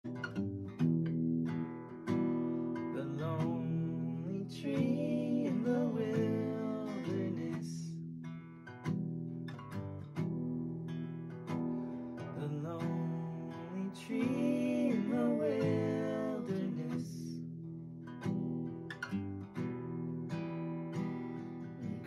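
Acoustic guitar strumming chords, with a singing voice coming in a few seconds in and again about fourteen seconds in: the opening of a children's song.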